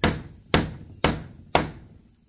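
Claw hammer blows on a wooden window frame: four evenly spaced strikes, about two a second, each dying away quickly.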